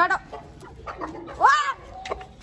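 Chickens calling: a brief call at the start, then a louder single call that rises and falls in pitch about a second and a half in.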